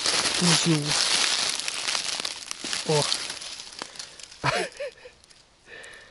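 Dry fallen leaves and grass rustling and crackling as a hand digs into the forest litter under a log to pick a young orange-capped bolete; the rustling is loudest for the first three seconds, then dies away.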